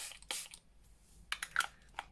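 Short spritzes from a pump-action makeup setting spray (Catrice Prime and Fine Multi-Talent Fixing Spray) misted onto the face, each a brief hiss. The first two, right at the start, are the loudest, followed by a few fainter ones.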